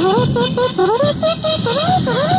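A radio programme's opening jingle: a quick melodic line of short pitched notes, several of them sliding upward, about four or five a second.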